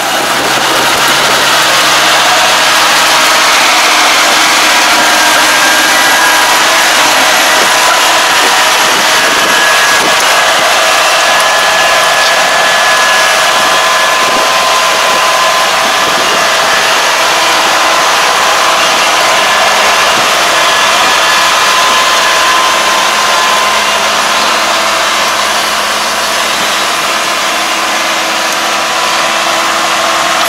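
Kubota ARN460 combine harvester's diesel engine running loud and steady as the machine drives on its crawler tracks, with a faint steady mechanical whine over the engine noise.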